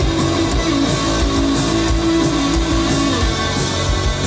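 Live rock band playing an instrumental passage: electric guitars over a steady drum beat, with no singing.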